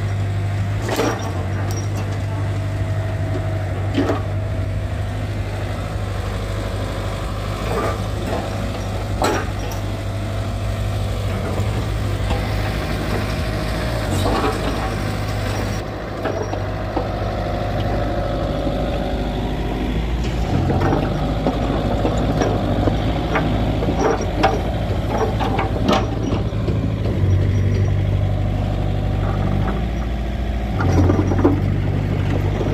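Mitsubishi MM35 mini excavator running steadily while its arm and bucket work and it tracks over dirt, with occasional clanks and knocks. The machine gets busier and a little louder in the second half.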